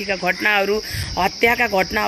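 Steady high-pitched chirring of crickets, unbroken, behind a woman talking.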